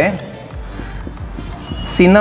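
Dry-erase marker writing on a whiteboard: a string of light, irregular taps and strokes as letters are drawn.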